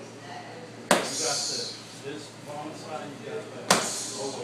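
Two punches from boxing gloves landing on focus mitts: sharp smacks a little under three seconds apart.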